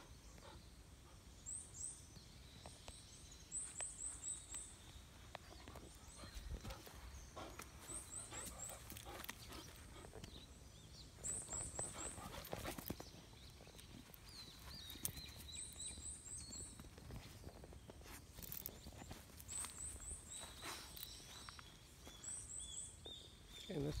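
Quiet outdoor ambience: a high, thin chirping in quick runs of four or five notes, repeated every few seconds, over soft scuffs and rustles in grass from a dog on a lead and the person walking it.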